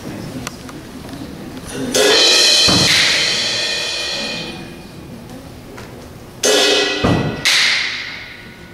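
Concert band playing: a soft opening, then about two seconds in a loud full-band chord with drums that dies away over a few seconds, followed near the end by three sharp loud accents.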